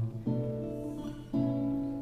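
Acoustic and electric guitars playing together: chords struck about a quarter second in and again about a second and a half in, each left to ring.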